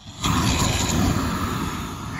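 A Boring Company flamethrower firing: a loud rushing whoosh of flame that starts about a quarter second in and holds steady.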